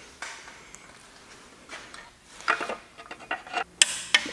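Light, irregular metal clinks and knocks as a clutch pressure plate is handled and set onto an engine's flywheel and disc, few at first, then coming more often in the second half.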